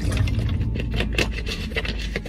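A clear plastic water bottle crackling and crinkling in the hands as someone drinks from it: a run of irregular small clicks and crackles.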